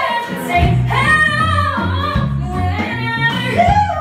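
A woman singing a slow pop ballad live, holding and bending long sustained notes, over a band accompaniment with guitars.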